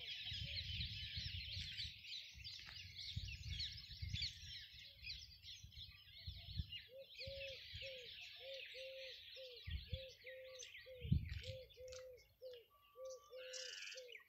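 Many small birds chirping in a dense, busy chorus; from about halfway through, a low hooting bird note repeats two or three times a second. Faint low rumbles and a few soft thumps sit underneath.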